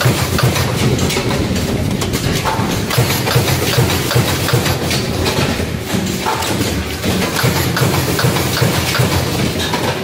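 Automatic plastic card punching and sorting machine running: a steady low mechanical rumble with continuous rapid clattering and clicking.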